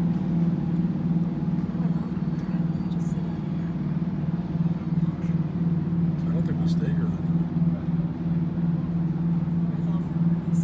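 Steady low drone of a cruise ship's machinery, with an even throb.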